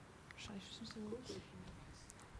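Faint speech away from the microphone: a few low, indistinct words.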